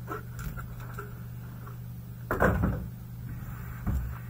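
Cardboard trading-card hobby boxes handled on a table. There are a few light taps, a louder cluster of knocks and scrapes a little past halfway, and a short thud near the end, over a steady low hum.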